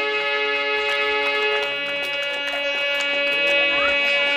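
Harmonium holding a sustained chord after the drumming has stopped, its reeds sounding several steady tones at once.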